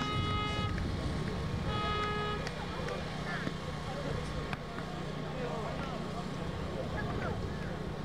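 Basketball scoreboard buzzer sounding two short blasts about a second apart as the game clock reaches zero, signalling that time has run out. Voices murmur underneath.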